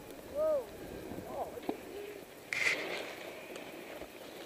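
Outdoor murmur with a few brief, faint voices calling out from people on the slope, and a short hiss about two and a half seconds in.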